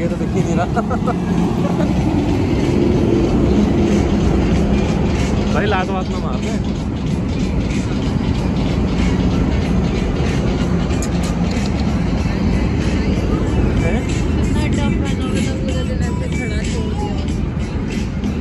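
Steady drone of road traffic, with music and a few brief voices in the background.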